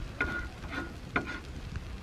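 Marinated meat and a whole fish sizzling in a wire grill basket over charcoal, with fat spitting and popping about four times.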